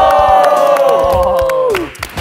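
A small group of young men's voices cheering together in one long held shout, which falls away just before the end.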